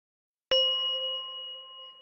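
A single bell-like ding about half a second in, ringing with a clear tone and fading away over about a second and a half.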